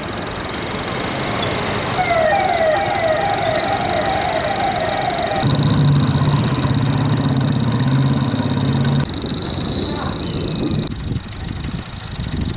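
Street ambience with traffic noise that changes abruptly several times. From about two seconds in, a quick run of repeated chirps lasts about three seconds. A steady low drone then holds for about three and a half seconds, and a thin high whine runs underneath throughout.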